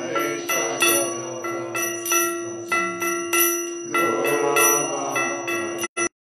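Metal bells struck repeatedly, about two or three strikes a second, each one ringing on over a steady held tone. The sound cuts out abruptly near the end.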